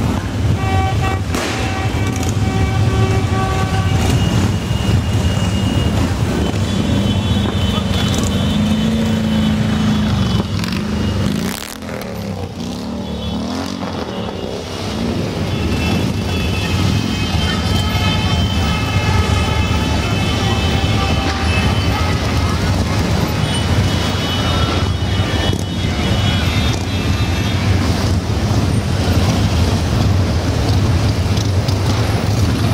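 A large group of Harley-Davidson V-twin motorcycles running together at slow parade pace, with a steady low engine drone. Horns sound several times over it.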